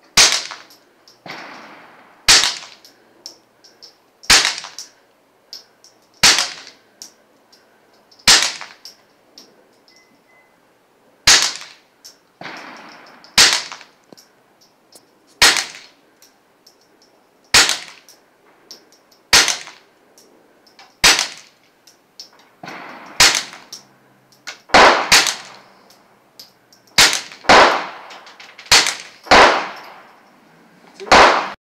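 Suppressed Taurus TX22 .22 LR pistol firing subsonic rounds in slow single shots, about one every two seconds, coming faster near the end with some shots about half a second to a second apart. Each shot is a sharp pop with a short echo trailing after it.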